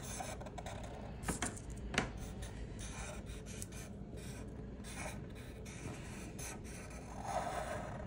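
Sharpie permanent marker drawing on paper: soft scratchy rubs and squeaks as lines are stroked on, coming in irregular short strokes, with a couple of sharper ones about one and a half and two seconds in.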